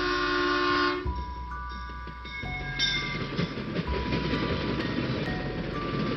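Intro soundtrack: a sustained multi-note horn-like chord that cuts off about a second in, followed by a steady rumbling noise with scattered held high notes over it.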